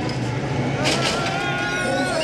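A lowrider station wagon's hydraulics hopping the car up onto its rear wheels, with a steady low hum throughout and a thump about a second in. Spectators are shouting over it.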